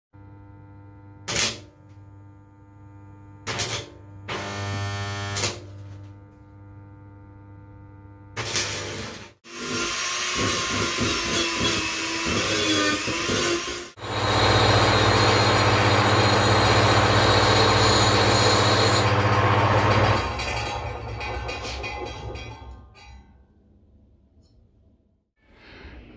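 Small handheld electric rotary tool running and grinding against a steel-wire frame. A steady motor hum is broken by a few sharp knocks, then the grinding grows louder and steadier and dies away near the end.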